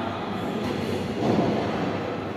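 Steady, low, noisy din of a large indoor hall, swelling slightly about a second and a half in.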